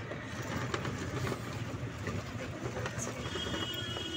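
Steady rattling and road noise from inside a moving e-rickshaw (toto), its body and fittings clattering as it rolls over the road. A faint, thin high tone joins near the end.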